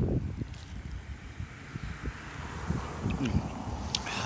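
A man quietly sipping and swallowing coffee over a steady low background rumble, with a sharp click near the end.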